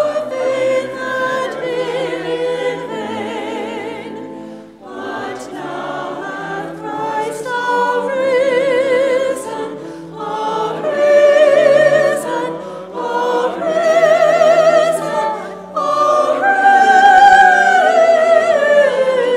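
Choir singing a sacred piece, voices with strong vibrato, in four phrases with short breaks between them.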